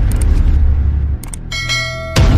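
Subscribe-button animation sound effects: a short click near the start, then a bright bell ding ringing in the last half second, over a loud, deep low rumble.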